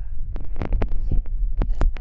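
Handheld microphone through a PA system: a steady low hum with a run of irregular thumps and pops, and faint speech underneath.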